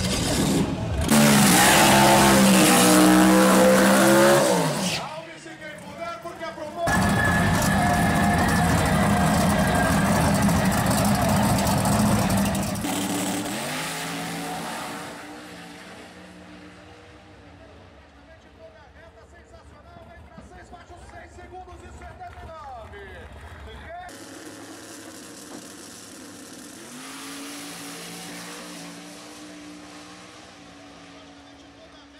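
Pro Mode drag car's engine at full power: a loud burst of revving, a short dip, then about six seconds of full-throttle running that fades as the car pulls away down the strip. Quieter engine sound with rising and falling pitch follows in the second half.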